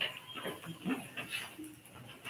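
Footsteps on a wooden floor, about two a second, with faint low voices in the room.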